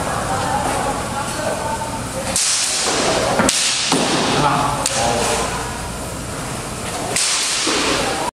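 Steel longswords meeting and sliding along each other in a few sudden, harsh, noisy bursts about a second long, with faint voices in between.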